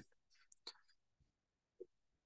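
Near silence: quiet room tone, with a couple of faint, short sounds, one just after half a second in and one near the end.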